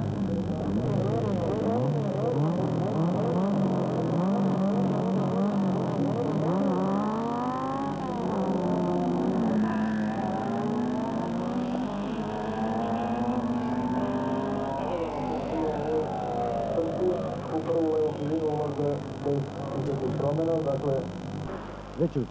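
Several racing car engines revving together, their pitches wavering up and down, then climbing and falling in long sweeps as the cars pull away from the start and pass. Near the end the sound breaks into choppier surges.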